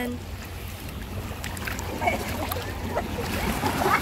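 Small sea waves washing over the rocks of a breakwater, with a steady rumble of wind on the microphone.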